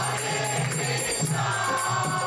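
Group kirtan: voices chanting a melody together, accompanied by a mridanga drum and jingling hand percussion, with a second, higher line of voices joining about a second and a half in.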